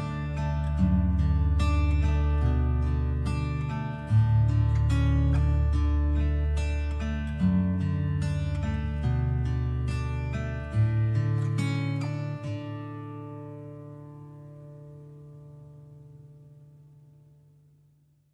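Instrumental acoustic guitar music, plucked notes and chords over a steady low bass, ending on a final chord that rings out and slowly fades away over the last several seconds: the close of a song.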